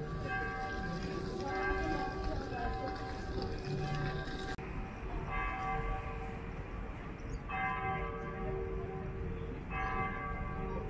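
Bells ringing in a series of ringing strokes, one every couple of seconds.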